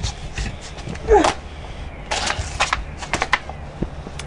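A short voiced grunt about a second in, then a scattering of sharp knocks and rattles, some close together.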